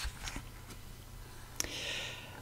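Faint paper handling: small clicks and soft rustles as an oracle card and its guidebook's pages are handled, with a short, louder rustle near the end.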